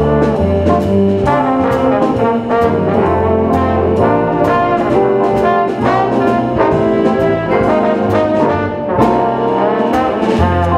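Slide trombone soloing, playing a melodic jazz line, with upright bass notes underneath and steady cymbal taps keeping time.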